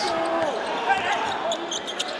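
Basketball dribbled on a hardwood court during play, over the voices of a large arena crowd.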